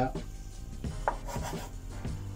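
A dough scraper cutting through soft naan dough and scraping on a wooden chopping board: a few short scrapes and light taps, mostly in the first second or so.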